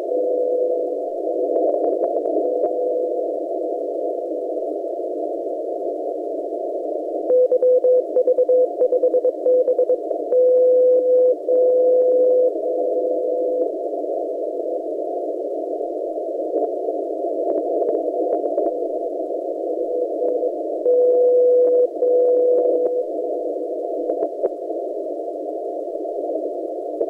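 Shortwave receiver audio through a narrow CW filter: a steady band of hiss carrying NCDXF HF beacons keyed in Morse code as a tone near 500 Hz. About seven seconds in, one beacon sends its callsign and then a row of one-second dashes, the beacon's power steps. A second beacon sends two more long dashes near the end.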